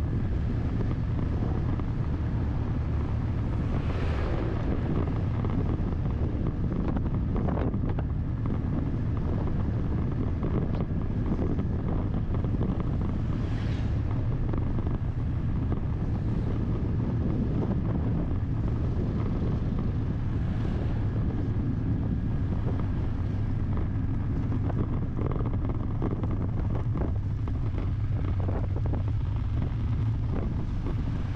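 Wind buffeting the microphone of a moving vehicle, with the vehicle's road rumble underneath: a steady low rumble, with a few brief hissy swells.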